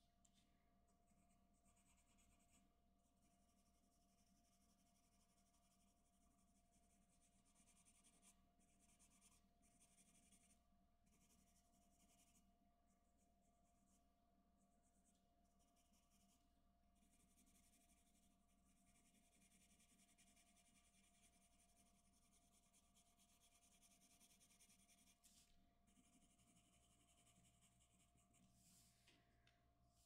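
Faint scratching of a graphite pencil shading on drawing paper, in runs of a few seconds broken by brief pauses.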